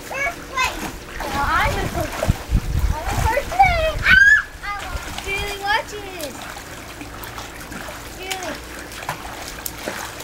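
Young children's high-pitched voices calling out and squealing several times, mostly in the first six seconds, over water splashing from kicking in a swimming pool.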